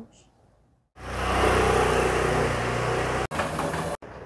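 A motor engine running close by, loud and steady. It starts about a second in after near silence and cuts off abruptly about three seconds in.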